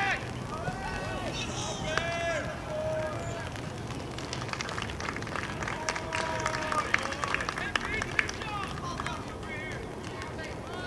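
Voices calling and shouting across a baseball field: scattered players' and bench chatter, with a few high, rising yells about two seconds in. Scattered sharp clicks come in the second half.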